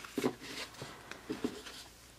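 Pokémon trading cards rubbing and sliding against each other as a stack is sorted in the hands, faint, with a few short soft rustles.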